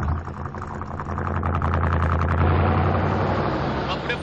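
An SUV's engine running with a steady low hum. It grows louder about a second in and eases off near the end.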